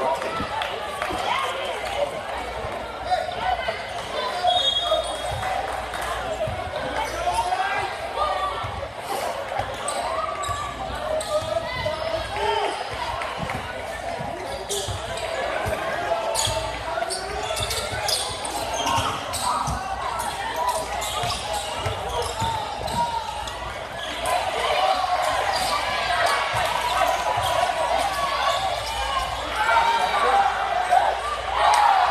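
Basketball game in a gymnasium: steady chatter from the crowd in the stands, with a basketball being dribbled and bouncing on the hardwood court.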